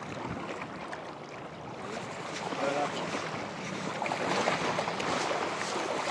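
Wind and waves at the shoreline: a steady noise that grows louder about two seconds in, with a short pitched sound about two and a half seconds in.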